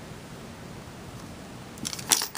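Steady low hiss of room tone, with a few light metallic clinks near the end as a metal heart-link chain is moved and set down.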